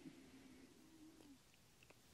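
Near silence: room tone, with a faint, slightly wavering low drawn-out tone that stops a little over a second in.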